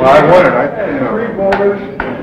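Several men talking over one another in a room, the words unclear, with a sharp knock about one and a half seconds in.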